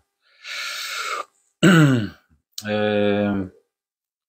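A man's voice between sentences: a breath, then a short 'eh' falling in pitch, then a held hesitation 'ehhh' of about a second.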